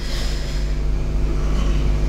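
A low rumble that grows steadily louder, under a steady low electrical hum.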